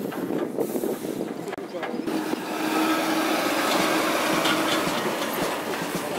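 A heavy articulated lorry driving past close by, its engine and tyre noise growing louder about two seconds in and holding steady. Voices can be heard underneath.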